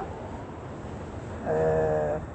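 A pause with low background noise, then near the end a man's voice holding one flat-pitched vowel for about half a second, like a drawn-out hesitation "eee".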